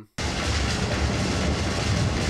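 A loud, steady rush of noise from the film's soundtrack, heaviest in the low end, cutting in sharply just after the start and running on without a break.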